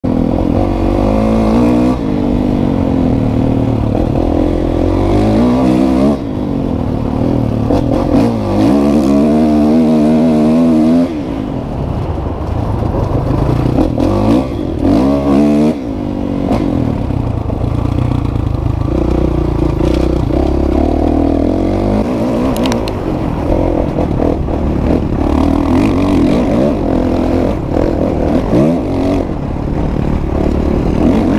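2016 Kawasaki KX450F's single-cylinder four-stroke engine under hard acceleration on a trail ride, its pitch climbing several times as it revs out and falling back at each gear change or throttle lift.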